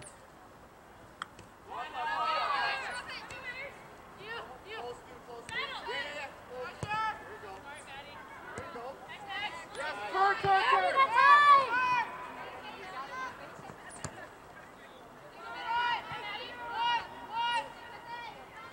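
Voices shouting and calling out in short bursts during a soccer game, from players and people on the sideline. The shouts are loudest about ten to twelve seconds in.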